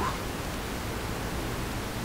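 Steady hiss of background noise, the recording's noise floor, with nothing else sounding.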